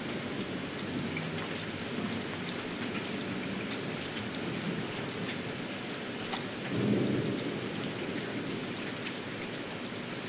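Steady rain with scattered drop ticks, used as an ambient layer in a vaporwave track, over a faint low murmur that swells briefly about seven seconds in.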